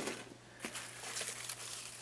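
Faint handling noise: soft rustles and a couple of small clicks over a low, steady background hum.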